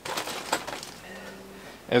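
Faint handling and movement noises, light rustles and clicks, followed about a second in by a brief faint low hum.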